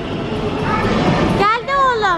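Steady din of a busy amusement arcade, then a high-pitched voice calling out about a second and a half in.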